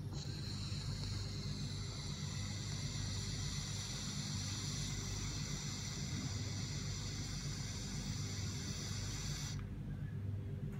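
A long draw on an H-legend 3 e-hookah pen with a water chamber: a steady hiss of air pulled through the pen that lasts about nine and a half seconds and cuts off suddenly.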